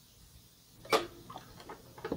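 A sharp click about a second in, then a few faint ticks: the tilt head of a Hamilton Beach stand mixer being lowered and latched over its stainless steel bowl, with the motor not yet running.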